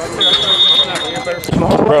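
A single short, shrill whistle blast lasting just over half a second, typical of a referee's whistle ending a play, over the talk of players nearby.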